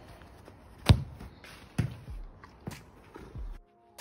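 A football being touched and struck by a foot on artificial grass: a sharp thud about a second in, the loudest, then softer thuds roughly a second apart. The sound drops out briefly near the end.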